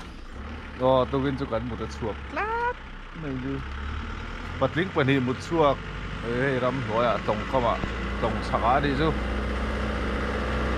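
Men's voices talking, the loudest sound, over a steady low rumble that sets in shortly after the start.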